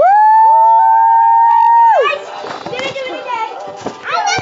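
Children yelling a loud, long held "woo" for about two seconds, the pitch sweeping up at the start and dropping away at the end, with a second, lower voice joining about half a second in; excited shouting and chatter follow.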